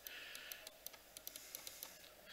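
Faint, irregular clicking of laptop keys being typed, about a dozen quick clicks.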